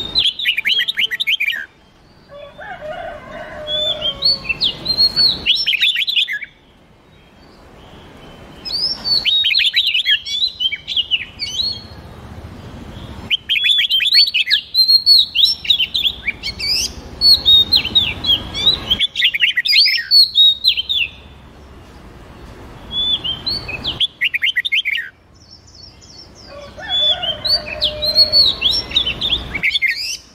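Recorded song of red-whiskered bulbul and oriental magpie-robin: phrases of rapid, chirpy whistled notes, a few seconds each, breaking off sharply between phrases.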